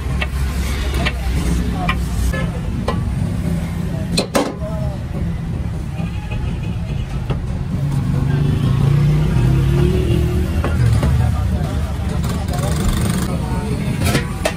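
Busy street-stall din: a steady low rumble with indistinct voices in the background, and a sharp knock about four seconds in.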